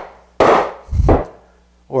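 Two knocks on a holdfast, driving it down to clamp a wooden workpiece to a wooden workbench, about half a second apart, the second one deeper.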